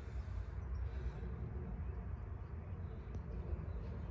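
Synthetic motor oil being poured from a quart bottle through a funnel into an engine's oil filler, over a steady low rumble.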